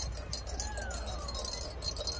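High, irregular metallic jingling, like small bells or chimes shaking, with faint voices underneath.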